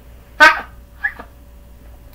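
A dog gives a short, loud, high-pitched yelp, then a second, fainter whine about half a second later.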